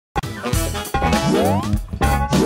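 Short playful music jingle for a TV channel's animated logo. It starts abruptly just after the beginning, and a run of quick rising sliding notes comes about one and a half seconds in.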